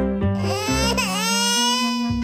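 Background music with a high-pitched crying sound laid over it from about half a second in, its pitch dipping sharply once near the middle.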